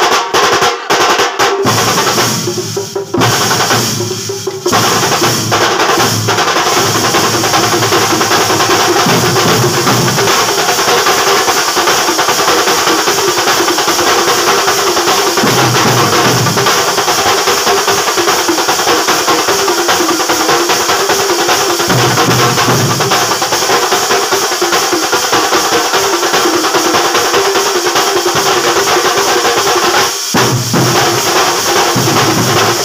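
Massed barrel drums beaten fast with sticks and hands, a loud, dense and unbroken drumming with brief dips in loudness about three and four and a half seconds in.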